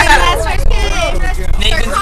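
Several voices talking and chattering at once over the steady low rumble of a school bus.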